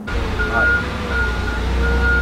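A vehicle's reversing alarm beeping in a steady rhythm, about three beeps in two seconds, over a low engine rumble.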